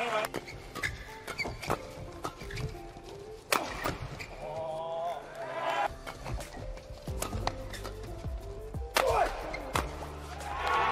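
Badminton doubles rally: sharp, irregular racket strikes on the shuttlecock and squeaks of shoes on the court, with two louder hits about three and a half seconds in and near the end. Background music plays under it.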